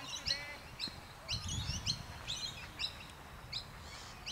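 Birds chirping: a string of short, sharp chirps a few times a second, with a faint low rumble about a second and a half in.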